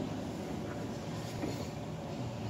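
Steady low rumble of background noise, with no organ notes sounding yet.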